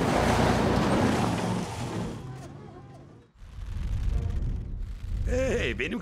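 Cartoon sound effect of a monster truck speeding away on dirt: a loud rush of engine and spraying dirt that fades out over about three seconds, then a low engine rumble, with a voice starting near the end.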